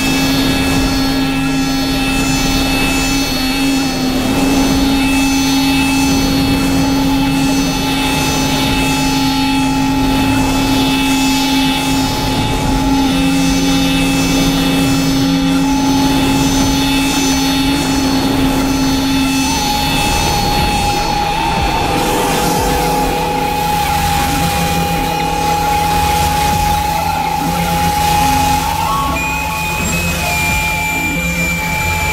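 Dense, layered experimental electronic music of steady sustained drone tones over a faint regular pulsing pattern up high. About two-thirds of the way through the low drone drops out and a new middle tone comes in.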